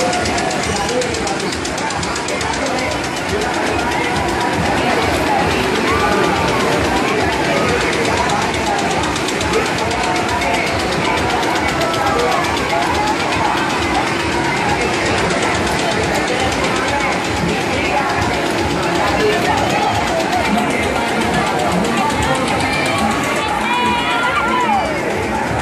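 Fairground din: many people's voices and shouts blurred together over the rapid, even chugging of an engine driving the machinery, continuous and loud.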